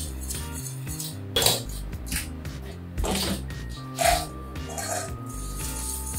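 Background music, with a metal whisk clinking and scraping against a stainless steel saucepan a few times as toffee sauce is stirred.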